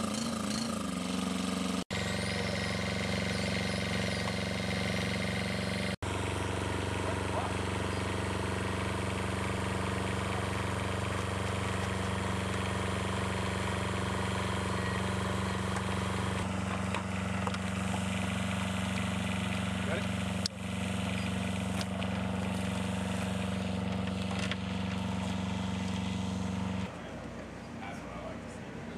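A small engine running at a steady speed and pitch, with a short wavering rise in pitch as it comes up at the start. About a second before the end it gives way to a quieter background.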